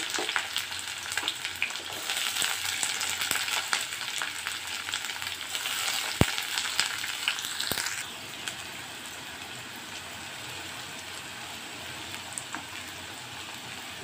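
Chopped onions sizzling in hot oil in a kadai, frying until they begin to change colour. For the first eight seconds or so a wooden spatula stirs and scrapes them with small clicks, then the sound settles into a quieter, steady sizzle.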